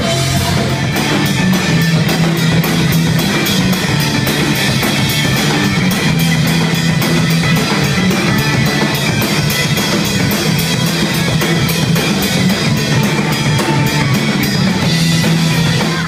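Live rock band playing loud: drum kit keeping a fast, even beat under electric guitar, the whole band stopping together right at the end.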